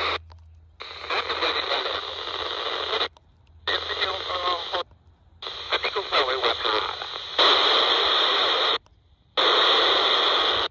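Handheld scanner's speaker playing long-distance fishing-boat radiotelephone chatter on the 30.775 MHz FM channel: short transmissions of voice buried in heavy hiss, each cutting off suddenly, with the audio dropping out four times between them.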